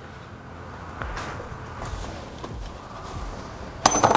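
Faint handling and shuffling noise, then near the end a sharp metallic clink that rings briefly as a metal tool is knocked or picked up.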